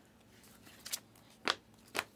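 Glossy Panini Select basketball trading cards being slid off a stack one at a time, each giving a short, crisp flick. After a quiet first second come a few flicks about half a second apart.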